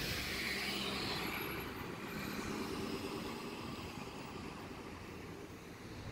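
A distant engine drone, faint and steady, that slowly fades away.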